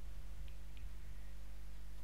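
Steady low background hum with no speech, and two faint short clicks about half a second in, a quarter of a second apart.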